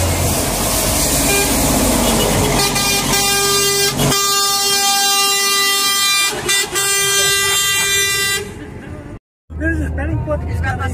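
Truck air horn sounding one long steady blast of about six seconds, starting a few seconds in, over road noise heard from inside a moving car. Near the end the sound cuts off abruptly.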